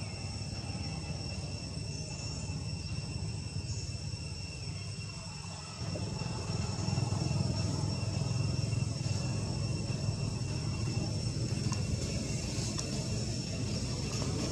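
Outdoor ambience: a steady, high-pitched insect drone over a low rumble, which gets louder about six seconds in.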